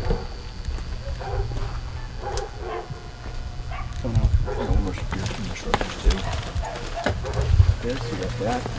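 Puppies whining and yelping in short, bending cries, loudest in the second half, with thuds and clicks of people moving around.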